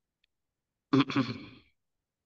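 A man's single short vocal sound, under a second long, about a second in, with silent pauses either side.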